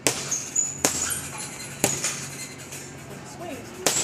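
Boxing-gloved punches landing on a heavy punching bag: four sharp smacks, the first three about a second apart, the last after a gap of about two seconds.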